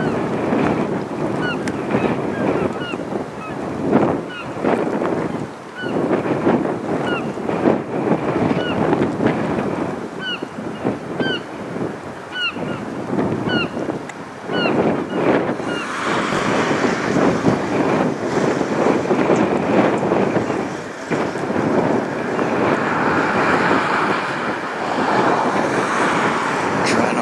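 Geese honking repeatedly over gusty wind buffeting the microphone. After about fifteen seconds the honking dies away and a broader, steadier hiss of wind and water takes over.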